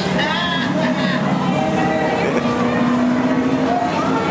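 Many people talking at once, with background music.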